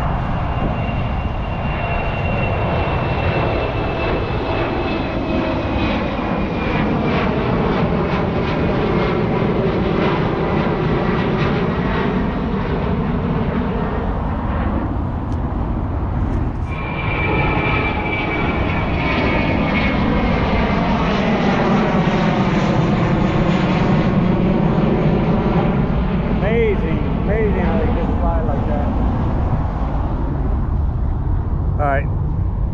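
Jet airliner engines passing near the airport: a loud, steady rumble with a high whine that slowly falls in pitch. About halfway through the whine breaks off, starts again higher, and falls once more.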